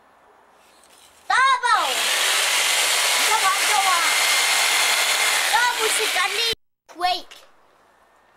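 Electric jigsaw running steadily, its blade sawing into a large raw pumpkin. It starts about a second in and cuts off abruptly a little before the end.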